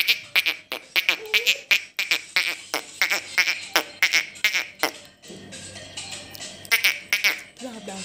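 Squeaker shoes on a baby's feet giving quick runs of short, high squeaks, several a second, as the baby shifts and bounces while standing. The squeaks stop about five seconds in, then come back in a short burst near the seventh second.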